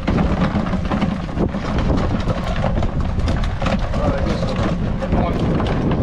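Strong wind buffeting the microphone, a continuous low rumble, with scattered knocks and rattles as a mud crab is shaken out of a crab pot into a plastic tub.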